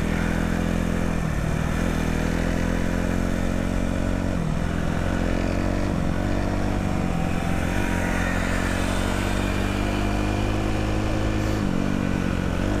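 Dirt bike engine running at a steady cruising pace, its note dipping briefly a couple of times.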